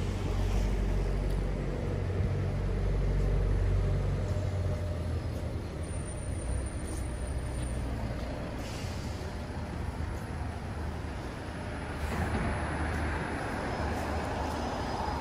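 Street traffic: a vehicle's low engine rumble that fades about four seconds in, over steady road noise, with a hiss swelling near the end.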